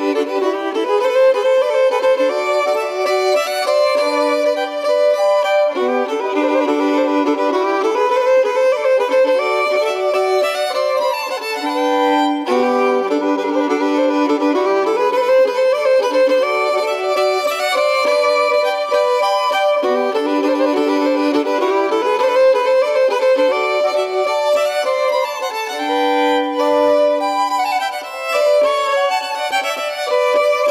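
Swedish folk fiddle music: a polska, a dance tune in three-beat time, bowed on fiddle, with a running melody over held lower notes.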